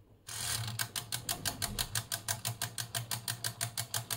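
Mettler TM15's stepper motor and mechanical drum counter readout ticking fast and evenly, about ten clicks a second, starting a moment in, as the digits roll down toward the PT100 sensor's reading; a low steady hum runs underneath.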